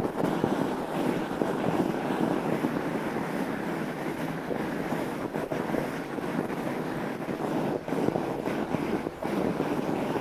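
Fat bike's wide tyres rolling steadily over snow on a frozen lake, with wind on the microphone.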